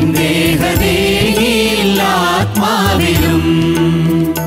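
A group of men singing a Malayalam Christian hymn together into microphones, over instrumental accompaniment with a steady beat and sustained bass notes.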